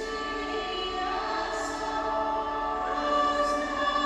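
A choir singing slowly, with long held notes that shift pitch every second or two.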